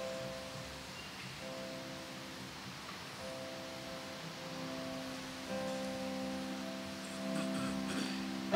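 Soft keyboard music: sustained chords held without decay, changing every second or two, stepping up a little in loudness about five and a half seconds in.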